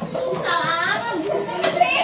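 Children's voices talking and playing, with no clear words.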